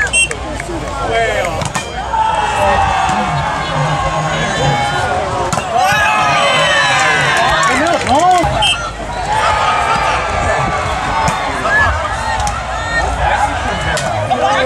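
A crowd of many voices talking and shouting over one another throughout, with a few short knocks among them.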